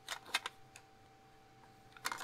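A few light clicks and taps of a plastic model-kit hood being fitted onto a plastic car body, mostly in the first half second.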